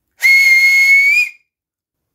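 A person's piercing whistle: one steady note about a second long that lifts slightly in pitch at the end, with a breathy hiss around it.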